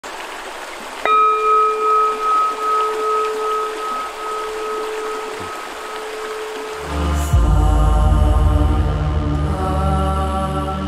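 A brass singing bowl is struck once about a second in and rings with a slow wavering pulse, fading over about six seconds, over a faint hiss of running water. Near the end, meditative music with a deep drone comes in.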